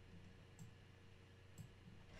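Near silence with two faint computer-mouse clicks, about a second apart.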